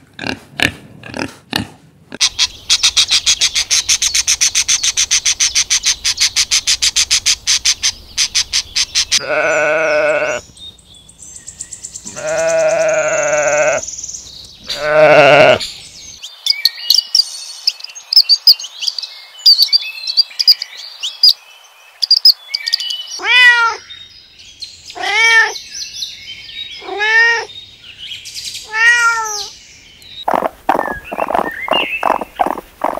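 A string of different animal calls: a fast pulsing trill for several seconds, then three long wavering calls, a spell of high chirps, and near the end four calls that each fall in pitch, about two seconds apart.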